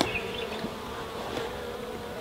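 Honey bees buzzing around an open hive, a steady hum.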